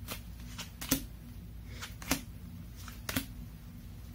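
A deck of oracle cards being shuffled by hand: a string of short card clicks and slaps, the loudest three about a second apart.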